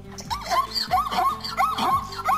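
Zebra barking: a quick series of short, yipping calls, about three a second, each rising and falling in pitch. Soft background music plays underneath.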